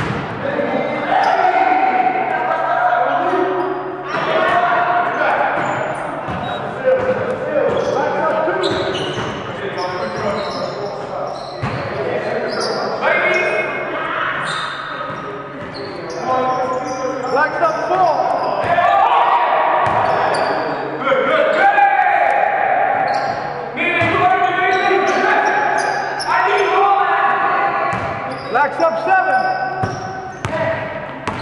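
A basketball bouncing on a hardwood gym floor as it is dribbled and passed in a pickup game, over players' voices calling out across the gym.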